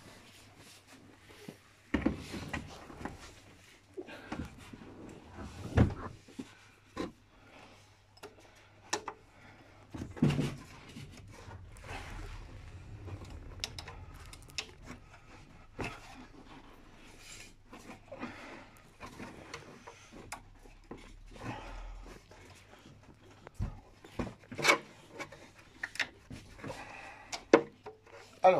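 Intermittent handling noises as a hand works a ribbed (6-rib poly-V) accessory belt onto the engine's lower pulleys: scattered clicks, knocks and rubbing, with a few sharper knocks spread through.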